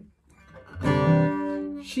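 Taylor steel-string acoustic guitar: a chord strummed about three-quarters of a second in and left ringing, fading slowly. A singing voice comes in at the very end.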